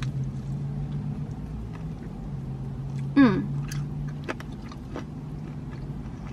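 A person biting and chewing a crispy fried chicken wing, with many short crunchy clicks, over a steady low hum. About three seconds in there is a short hummed "mm" that falls in pitch.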